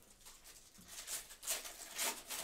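Foil wrapper of a trading-card pack crinkling and tearing as it is ripped open, in several short bursts, the loudest about one and a half seconds in and at the end.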